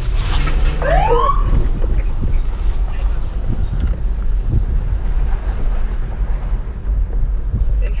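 2009 Ford Crown Victoria Police Interceptor driving slowly, heard from inside the cabin: a steady low rumble of the engine and road. A short rising whoop sounds about a second in.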